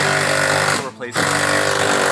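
Power tool running in two steady bursts of about a second each, with a short break between, backing out motor mount bolts.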